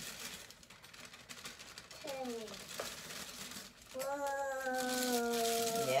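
A drawn-out wordless vocal sound: a short falling call about two seconds in, then one long tone held for about two seconds near the end, sinking slightly in pitch. Faint crinkling of a plastic bag underneath.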